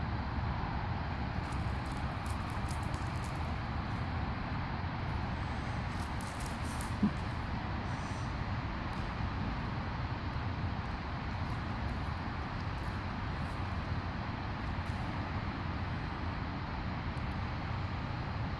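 Steady outdoor background noise with a low rumble underneath, and one brief sharp sound about seven seconds in.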